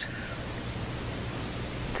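A steady, even hiss like static or tape noise that cuts in and out abruptly, replacing the room sound between the speaker's sentences: a noise fault in the recording.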